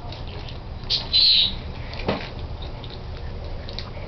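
A few short, high-pitched animal squeaks, the loudest about a second in, and a single sharp click about two seconds in.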